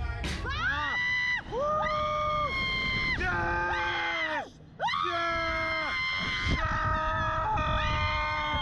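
A woman and a man screaming as a slingshot reverse-bungee ride flings them into the air. Their long, held screams follow one after another, with a brief break about four and a half seconds in.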